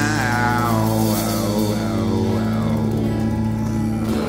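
Live rock band playing: drums, bass, electric and acoustic guitars, with a sustained low end and a lead line that bends up and down in pitch.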